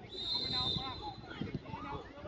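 Referee's whistle blown once, a steady high note lasting just over a second, with voices calling on the pitch around it.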